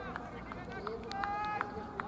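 Cricket fielders' raised voices calling out across the field, one long held call about a second in, with a few sharp claps.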